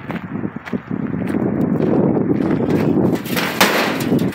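Footsteps crunching on gravel while walking up to a gas grill, then a short, sharp metal rattle near the end as the grill lid is tugged; the lid is stuck and won't open.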